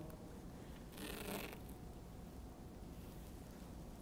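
A short rasp of adhesive draping tape being pulled off its roll about a second in, over quiet room hum.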